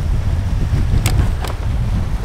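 Wind buffeting the microphone, a steady low rumble, with two faint clicks about a second in.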